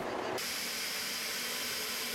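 Steady hiss of ambient background noise from a location recording, starting abruptly about a third of a second in and holding at an even level.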